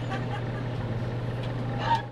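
A woman laughing and talking faintly over a steady low hum, with a short louder laugh near the end.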